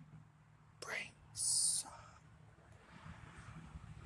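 A man whispering: a brief breathy rise about a second in, then a short, sharp high hiss like a whispered "shh".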